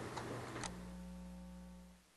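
Two faint clicks of a computer mouse in the first second, over a steady low electrical hum that cuts off abruptly at the end.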